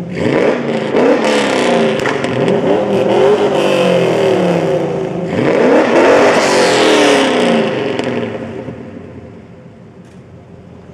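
Chevrolet Camaro LS1 and LT1 V8 engines revving: a run of quick throttle blips that rise and fall in pitch, then a longer, higher rev about five and a half seconds in. The engines then drop back and the sound fades over the last two seconds.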